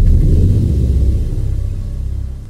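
Deep rumbling tail of a cinematic boom from a logo-reveal intro, a low bass rumble that slowly fades.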